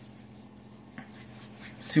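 Quiet room tone with a low steady hum, faint handling noise and a single light click about halfway, as pomade is worked in the hands.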